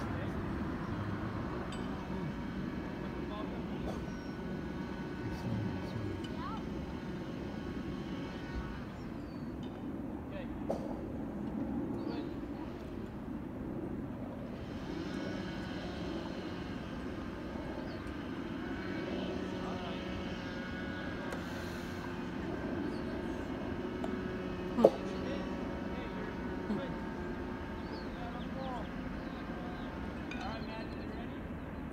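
Steady low hum of traffic with faint, distant voices from a ball field. A single sharp knock comes about 25 seconds in and is the loudest sound.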